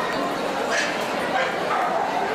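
A dog gives a short yip a little under a second in, over the steady chatter of a crowd.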